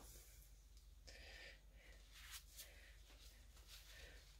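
Near silence, with faint brief rustles of a paper towel rubbing along a small paint-covered metal chain as it is wiped clean.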